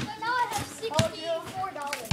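Children's voices talking indistinctly, with two sharp knocks, one at the very start and another about a second in.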